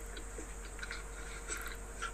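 Faint chewing of a mouthful of microwaved scrambled egg, with a few small scattered clicks over a faint steady hum.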